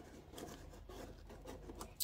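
Faint rustling and light taps of fingers handling a cardstock paper teapot box.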